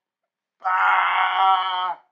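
A sustained, steady-pitched electronic tone with a moaning, voice-like timbre and many overtones. It starts abruptly about half a second in and cuts off at the end.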